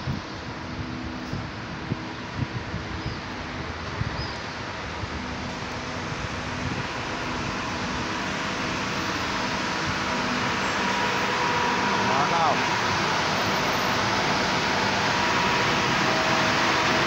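Street ambience with a steady mechanical hum and indistinct voices, growing steadily louder through the second half into the busy noise of a market crowd. A few soft thumps in the first few seconds.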